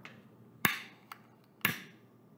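Long-nosed butane utility lighter clicking twice, about a second apart, as its trigger is pulled to spark it, with a faint small click between.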